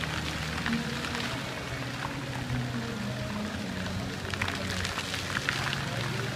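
Music with held low notes plays over a steady wash of splashing water as the fountain's jets fall back into the pool.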